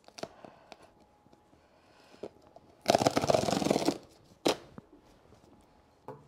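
Cardboard tear strip being ripped along the top of a shipping box: a loud ripping that lasts about a second, partway through, then a single sharp click. Faint rustles and clicks come before it.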